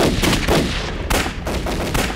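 A volley of rifle gunfire: several sharp shots in quick, uneven succession, about seven in two seconds, beginning suddenly.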